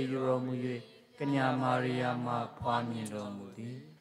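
A prayer recited aloud in a steady, chanting monotone, as when the rosary is prayed in church. It comes in two long phrases with a short break about a second in.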